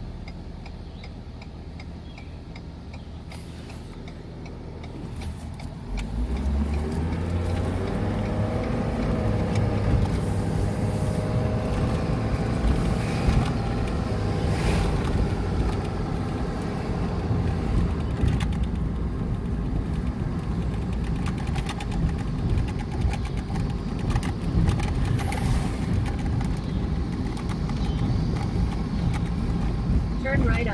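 A vehicle heard from inside its cab, quieter at first, then accelerating about six seconds in with a rising engine note, followed by steady engine and road noise while driving.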